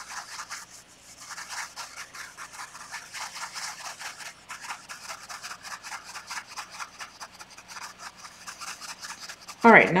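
A paintbrush scrubbing acrylic paint onto a canvas: quick, dense, dry scratching of the bristles against the canvas weave, with brief pauses about a second in and again around four and a half seconds.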